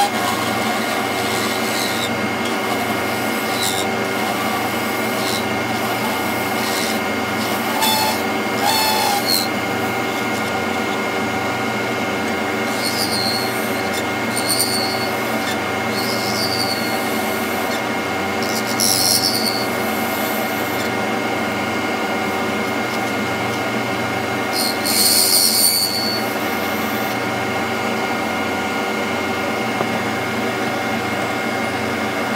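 Wood lathe running steadily while a hand-held turning tool cuts a spinning redwood burl pen blank, giving short hissing bursts of cutting noise every few seconds.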